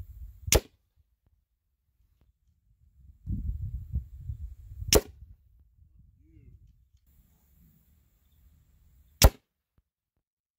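.30 caliber airgun fired three times at a ballistic-gel block from 20 yards: three sharp cracks about four seconds apart, the last the loudest. A low rumble comes before the first two shots.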